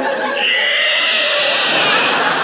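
A man doing a dinosaur screech into a stage microphone: one high, drawn-out shriek that starts about half a second in and holds to the end.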